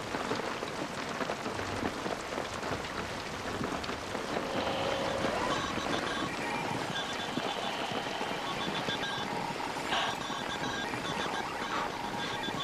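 Steady rain falling, with faint, choppy electronic tones coming in over it from about four seconds in.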